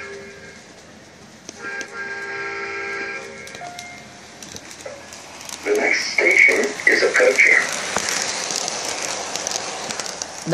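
Lionel LionChief Metro-North M7 O-scale train's onboard sound effects: a steady horn blast of about two seconds early on, then a louder, choppy sound burst for about two seconds, followed by the even rumble of the train running along the track.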